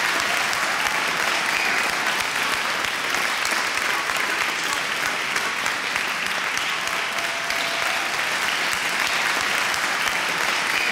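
Large theatre audience applauding steadily.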